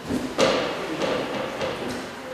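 A single sudden thump about half a second in, followed by quieter, muddled sound for about a second and a half.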